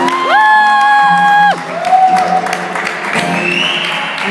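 A small audience clapping and cheering as a live acoustic guitar song ends, with a loud held whoop lasting about a second near the start and more whoops after it.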